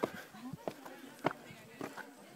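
Footsteps of a climber going up rough stone pyramid steps, a step about every 0.6 seconds, four in all, with faint voices of other climbers behind.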